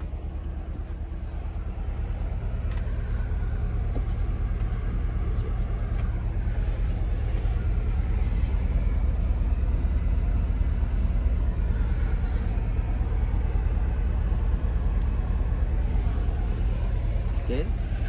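Steady low rumble of a car engine idling, fitting the 2022 Corvette Stingray's 6.2-litre V8, growing slightly louder over the stretch.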